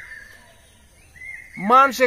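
A man's voice: a short pause, then he starts speaking loudly about a second and a half in.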